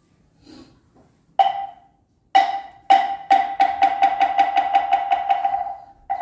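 Moktak, a Korean Buddhist wooden fish, struck with its mallet: a few spaced, hollow knocks that come faster and faster and run into a quick, even roll of about five strokes a second that fades toward the end.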